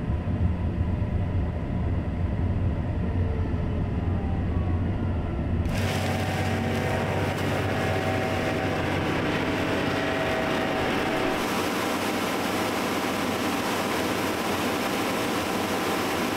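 John Deere X9 combine: a low, steady diesel rumble as it drives along the road, then, from about six seconds in, the rushing noise of the machine harvesting corn up close, with a steady faint whine.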